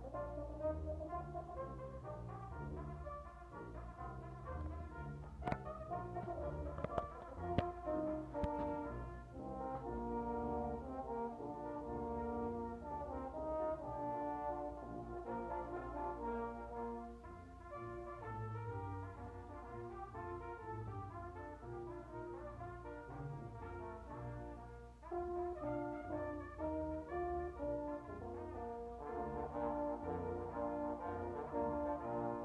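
Brass quintet of trumpet, trombone, tuba and other brass playing live, held chords moving from note to note with a deep tuba line beneath. A few sharp clicks break in about five to nine seconds in.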